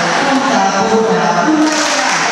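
Polka song with a sung vocal line playing loudly through a hall's sound system, with held sung notes.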